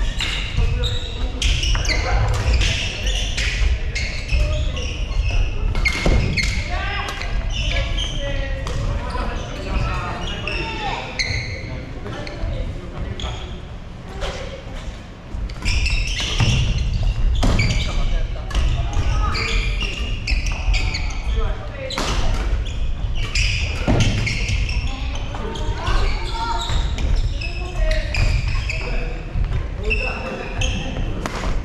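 Badminton rackets striking shuttlecocks in several simultaneous rallies: a steady, irregular series of sharp hits, with footsteps on the wooden court floor, echoing in a large gym hall under the murmur of players' voices.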